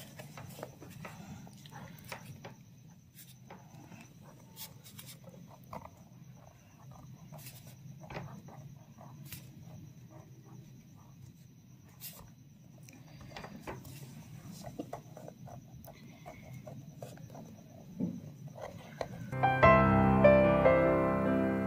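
Faint scratching and light ticks of a pen writing on lined notebook paper, over a low steady hum. Piano music starts just before the end.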